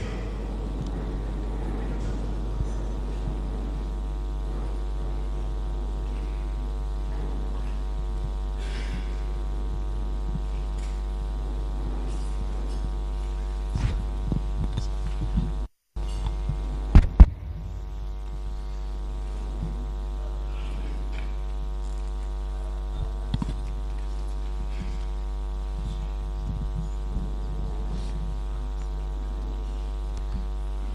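Steady electrical mains hum with a ladder of evenly spaced overtones. About halfway through, the sound cuts out for a moment, then comes back with two sharp pops, the loudest sounds in the stretch.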